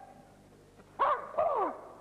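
A short vocal call in two parts, falling in pitch, about a second in, after a near-quiet moment.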